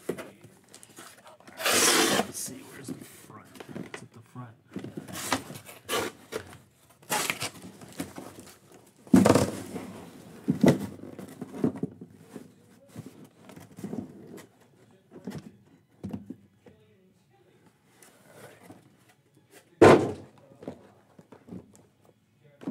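A cardboard shipping case of sealed card boxes being opened and handled: cardboard scraping and rustling, with several thunks as boxes are moved and set down. The loudest thunks come about nine seconds in and near the end.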